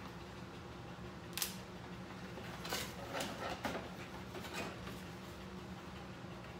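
Cardboard box and packaging being handled and opened: scattered scraping and crackling rustles, with a sharp crackle about a second and a half in and a cluster of them in the middle, over a faint steady low hum.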